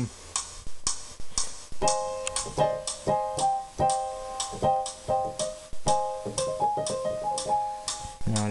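Rosegarden's recording metronome ticks steadily from the laptop, which shows recording is running. From about two seconds in, a Yamaha DGX-500 digital keyboard plays short chords of electric-piano tones over the ticks.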